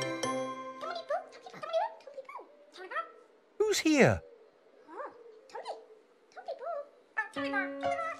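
Squeaky, chirping character voices from the Tombliboos: many short calls that slide up and down in pitch, with one louder falling squeal about halfway through.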